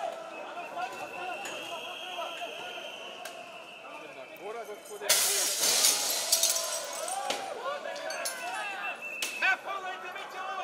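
Scattered shouting voices of a crowd over clinking and crunching broken glass, with a sudden crash of breaking glass about five seconds in.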